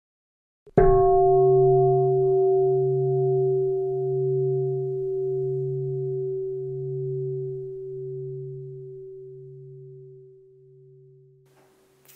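A single strike of a meditation bowl bell, struck about a second in and left to ring out, fading slowly over about eleven seconds with its lowest note wavering in slow pulses.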